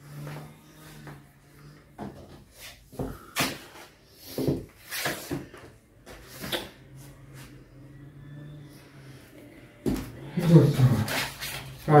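Scattered light knocks and clatters of household objects being handled and set down, over a faint low steady hum.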